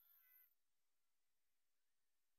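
Near silence, broken only by a faint, brief high scream in the first half second.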